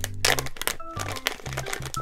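A clear plastic bag crinkling and crackling as fingers pull it open, over background music.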